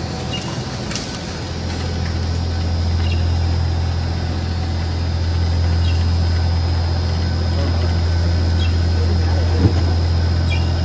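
Industrial rubber tyre-cord shredder running with a steady low drone from its drive, growing a little louder after about two seconds. A brief sharp knock comes near the end.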